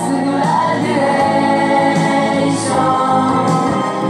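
A 1980s Japanese idol pop song with sung vocals over backing instruments, playing continuously.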